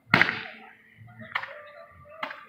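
Fireworks going off: a loud, sharp burst with a hissing tail right at the start, and a second, shorter crack about a second and a half later.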